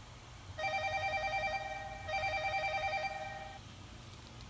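Electronic telephone ringer trilling twice, each ring a rapid two-note warble lasting about a second and a half, with a brief gap between the rings.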